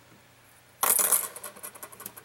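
A sudden clinking, rattling clatter of small hard objects being handled at a workbench, starting about a second in and trailing off into scattered clicks.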